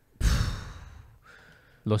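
A man's sigh, a heavy exhale close to the microphone that starts suddenly and fades away over about a second, followed by a faint short breath.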